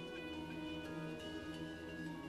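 Soft background music of sustained pitched notes, with no speech.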